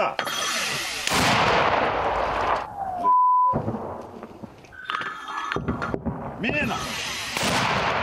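A mortar firing twice, about a second in and again near the end, each shot a sudden loud blast with a long rolling echo; a man's shout comes just before the second shot. A short, steady electronic beep sounds about three seconds in.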